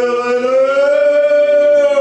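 Two men singing a Kuban Cossack folk song a cappella, holding one long drawn-out note that rises slightly and then holds steady.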